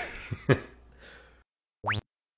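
A man's laughter trailing off, with one sharp burst about half a second in, then a moment of dead silence. Near the end comes a brief sound effect that sweeps steeply upward in pitch, a cartoon-style "boing" marking the cut to the next clip.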